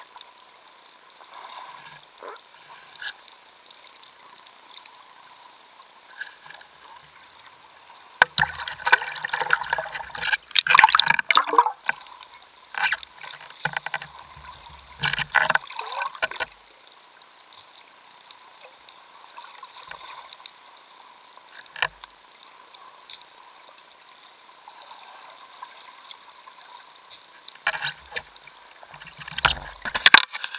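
Muffled water splashing and gurgling heard through an underwater camera housing, in irregular bursts about eight and fifteen seconds in and again near the end, with scattered clicks and knocks between.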